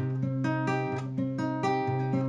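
Nylon-string classical guitar sounding a C minor barre chord note by note: a held low bass note under repeated plucks of the higher strings, about four a second.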